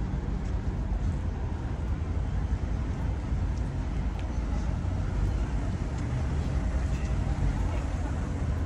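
Street ambience: steady rumble of passing car traffic, with voices in the background.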